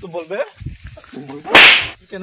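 A short, loud hissing burst, about four tenths of a second long, comes about one and a half seconds in. It is the loudest sound here, and brief voice sounds come before it.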